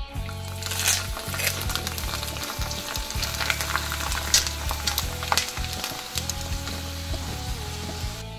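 Hot oil in a saucepan sizzling and crackling steadily as strips of dried snack dough deep-fry and puff up.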